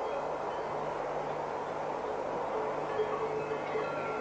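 Steady rushing noise of a passing electric train heard through a camcorder microphone. Faint ringing tones come in about three seconds in.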